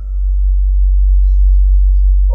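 A loud, steady low-pitched hum, one unchanging tone with no speech over it.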